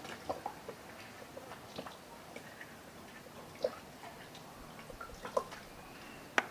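Faint, scattered small ticks and drips as a lemon is squeezed by hand over a basin of soapy water, its juice dripping into the water.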